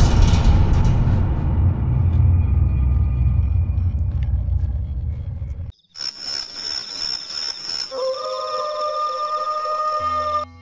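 Low, heavy rumbling horror sting that slowly fades and then cuts off abruptly a little past halfway. Eerie music follows, made of sustained high tones, with lower held notes coming in about two seconds later.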